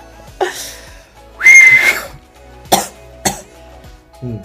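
Young man's fit of laughter: a short breathy laugh, then a loud coughing burst with a high whistling squeak about a second and a half in. Two sharp clicks follow near the end.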